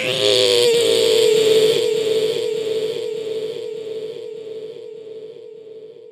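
A voice fed through an echo effect: one held tone that pulses about twice a second as the repeats stack up, fading slowly away.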